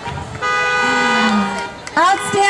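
Car horn giving one steady honk of about a second and a half.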